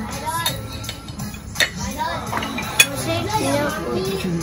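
Background music with voices under it, and a few sharp clinks of metal cutlery on a plate, the loudest about a second and a half in and near three seconds in.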